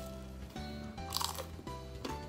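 A crunch of teeth biting into a crusty hard bread roll, heard once about a second in, over background music.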